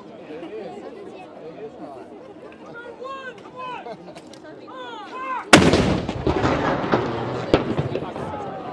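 Towed artillery howitzer firing a blank salute round about five and a half seconds in: one heavy boom that echoes and dies away slowly, with a fainter sharp crack about two seconds after it. Spectators chatter before the shot.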